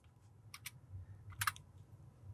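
A few faint computer keyboard and mouse clicks, in two close pairs about a second apart, as a formula is pasted in.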